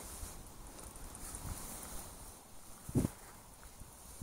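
Quiet outdoor background with one short, soft low thump about three seconds in.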